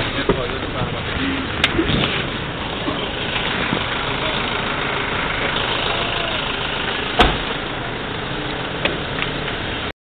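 Vehicle engine idling steadily under people's voices, with a single thump about seven seconds in.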